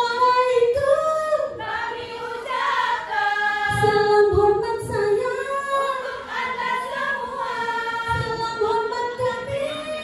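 Women's qasidah group singing together in long, held, gliding notes, with no instruments playing along; two soft low thumps come through, near the middle and near the end.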